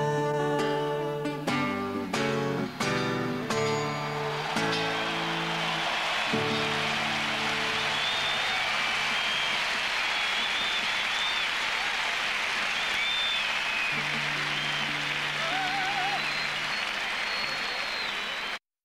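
A solo acoustic guitar strums the final chords of a song, ending about four seconds in. A large stadium crowd then breaks into sustained applause and cheering with whistles. A few low guitar notes ring out under the applause.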